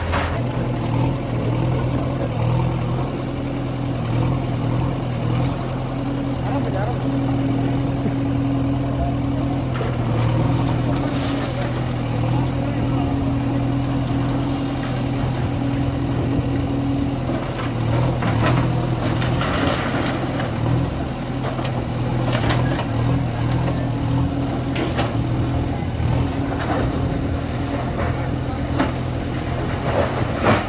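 A JCB backhoe loader's diesel engine running steadily while its arm knocks down brick and concrete walls, with scattered crashes and scrapes of falling rubble, most of them in the second half.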